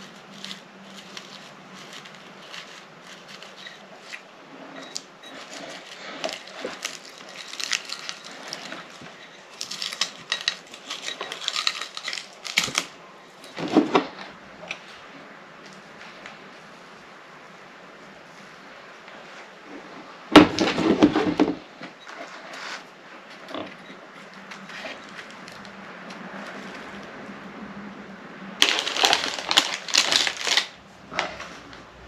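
Hand-work handling noises at a craft table: scattered rustles, taps and clicks as small craft pieces and a cordless hot glue gun are handled. A louder knock comes about twenty seconds in.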